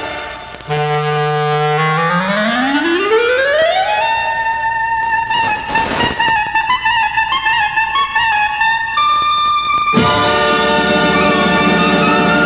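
Solo clarinet in a Yiddish theme tune: a held low note, then a long glissando rising over about two seconds to a high held note with ornaments. About ten seconds in, the full band comes back in.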